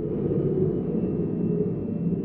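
Low rumbling swell of a logo-intro sound effect, with a faint thin high tone over it, fading out just after.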